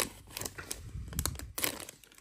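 Foil trading-card pack wrapper crinkling as it is crumpled in the hands, with irregular sharp crackles.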